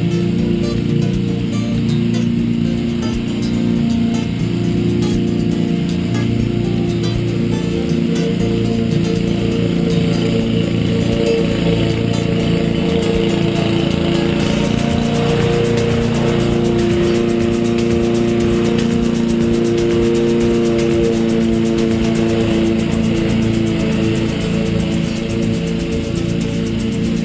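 Background music over the steady running of a Honda HRU216M2 self-propelled petrol lawn mower as it cuts grass.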